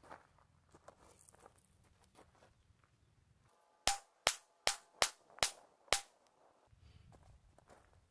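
A Colt Frontier Scout .22 rimfire single-action revolver fires six shots in quick, even succession, a little under half a second apart, starting about four seconds in. Faint clicks of the gun being handled come before the shots.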